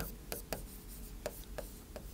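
A stylus writing by hand on the glass of an interactive display: a few faint, irregular taps and scratches as the letters are drawn.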